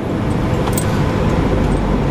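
Steady road and engine noise heard inside a car's cabin, with a deeper rumble swelling near the end.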